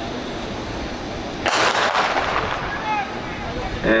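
Starter's pistol fired once to start a track race, a sharp crack with a short echoing tail about a second and a half in.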